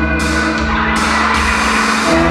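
A live band playing: sustained chords over a steady low bass, with no singing.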